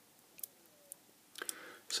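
A few faint clicks, then a brief rustle with more clicks near the end, from hands handling a small blue-wrapped lithium cell pack and its wires.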